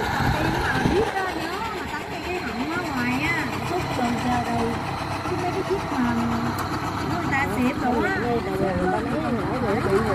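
Several people talking in the background over a steady low engine hum.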